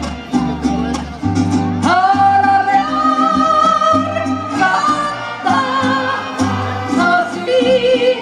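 Live mariachi music over a concert sound system: a woman sings long held notes with wide vibrato, swooping up to a high note about two seconds in, in the yodel-like falsetto style of the huapango, over deep bass notes and strings.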